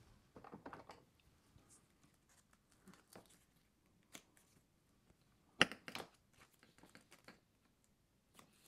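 Foam tape pulled off its roll and pressed onto a cardstock die-cut, with a short rasp of tape unrolling about half a second in and a scissors snip cutting the tape. Sharp clacks a little past halfway are the loudest sounds.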